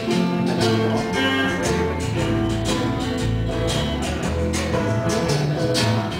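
Live acoustic band playing an instrumental stretch: strummed acoustic guitars over a bass line, with brushes on a steel folding chair used as percussion marking the beat.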